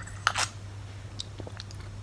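A person taking a sip from a mug: one short slurp about a quarter second in, then a few faint mouth clicks as she swallows, over a steady low hum.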